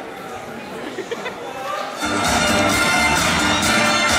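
Audience chatter in a hall, then loud recorded dance music with a heavy bass cuts in about halfway through.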